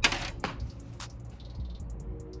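Small hard hardware being handled: a short rattle at the start, then two light clicks about half a second apart. The parts are the grille insert's plastic mounting brackets and clips.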